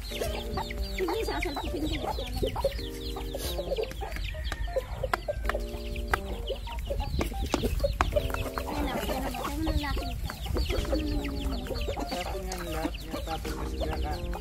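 Backyard chickens clucking in short, repeated low calls throughout, while chicks give many quick, high, falling peeps between them.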